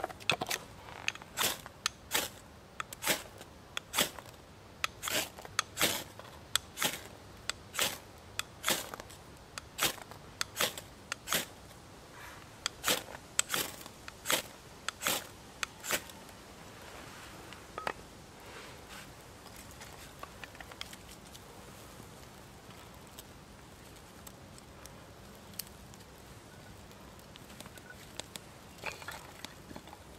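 Ferro rod scraped hard and repeatedly, about two sharp scrapes a second for roughly the first sixteen seconds, throwing sparks onto torn paper birch bark. After that the bark and kindling catch and burn with faint crackles and a few small pops.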